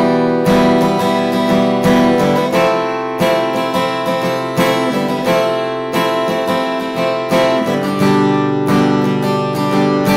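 Cort acoustic guitar strummed in a steady rhythm, each chord ringing between strokes. It is working through the chorus progression of A minor, F, G and E minor, with the chord changing every few seconds.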